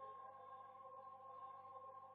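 A faint sung naat (devotional poem), one long note held at a steady pitch.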